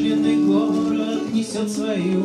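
A woman singing to her own acoustic guitar, strumming, in a live performance; she holds one long note for the first second or so, then the melody moves on.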